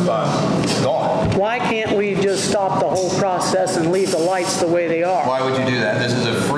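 Speech only: people talking back and forth, no other sound standing out.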